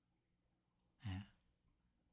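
Near silence broken by one short sigh from a man about a second in, a brief voiced breath out.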